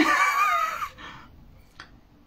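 A man's high-pitched laugh, falling in pitch and lasting about a second, then a quiet room with a faint click near the end.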